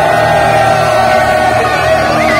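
Live heavy metal band playing loud, with distorted electric guitar holding long sustained notes.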